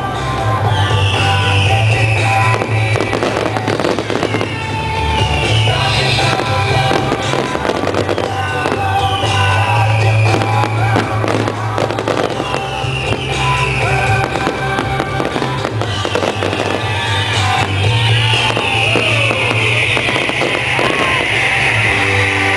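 Fireworks display: repeated bangs and crackles of aerial shells over loud music, with a whistle falling in pitch every three or four seconds.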